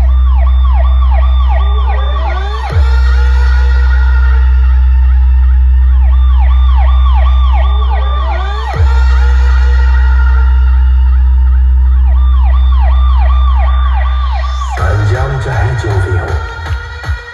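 Loud electronic DJ sound-check track: a steady heavy sub-bass under repeating siren-like wailing tones, with a sharp downward pitch drop about three seconds in and again about nine seconds in. Near the end the drone stops and a beat starts.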